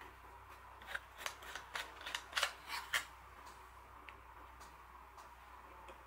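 The threaded lower sleeve of a Retekess T130MIC handheld wireless microphone being unscrewed from the handle by hand: a faint run of about a dozen small clicks and scrapes, starting about a second in and lasting about two seconds.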